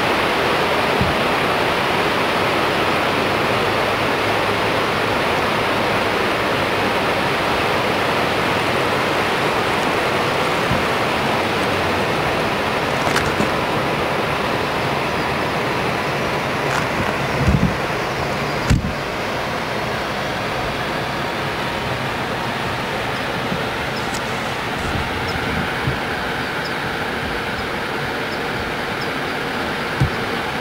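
Steady rushing of a large mountain waterfall. About two-thirds of the way through there is a sharp click, after which the rushing goes on slightly quieter.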